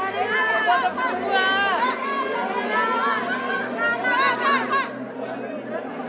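Crowd of fans chattering and calling out together, many voices overlapping.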